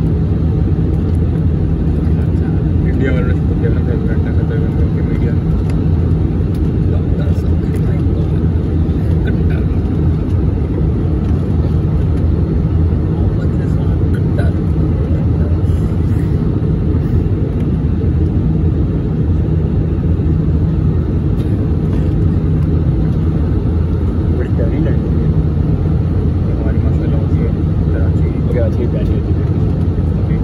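Airbus A320 cabin noise heard from a window seat over the wing during the descent: a loud, steady, deep rumble of engines and airflow that holds level throughout.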